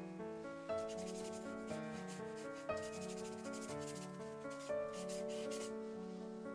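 Soft instrumental background music, over which a watercolour brush rubs and scrubs against paper in rapid short strokes, in two spells: about a second in and again near the end.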